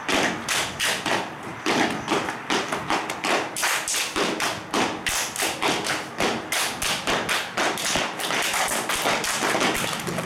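Children's step team stepping in unison on a concrete floor: sneaker stomps and hand claps in a steady rhythm of about two to three sharp beats a second.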